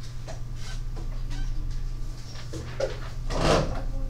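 Classroom room tone during quiet work: a steady low hum with faint, scattered student voices, and a brief louder noise near the end.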